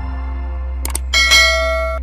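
Sound effects for a subscribe-button animation: two quick mouse clicks a little under a second in, then a bright bell chime that rings on and slowly fades, over a low steady music drone.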